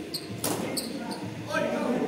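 Badminton rally: a racket smacks the shuttlecock about half a second in, among short high squeaks of court shoes on the floor.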